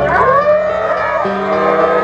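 A group of children shouting and cheering together, many voices sliding up and down in pitch at once, over background music.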